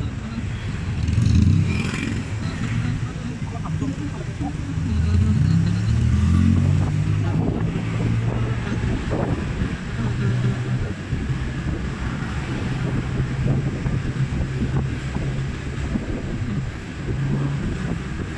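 Engine and road noise of a vehicle driving slowly along a street, the low engine note rising and falling several times.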